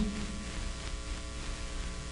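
Steady electrical mains hum with faint hiss from the microphone and sound system, in a pause between spoken phrases.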